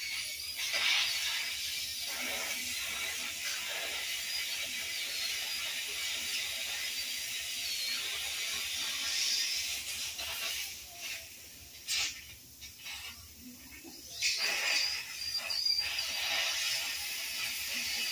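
Dental drill whining with a hiss as it cuts the access opening into a tooth for a root canal. It stops about ten seconds in, leaving a short click, and starts again a few seconds later.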